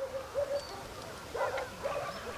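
A handful of brief, faint animal calls, each a short pitched yelp, over a light background hiss.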